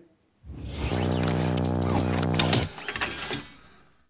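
Short electronic ident sting for a segment title: a held chord with rapid mechanical-sounding clicks over it, ending in a brief high sweep that fades out.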